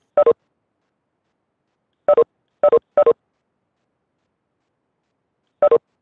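Video-conferencing app's 'participant left' notification chime: a short falling two-note electronic blip, sounding five times. It comes once near the start, three times in quick succession around the middle, and once near the end, as attendees leave the meeting.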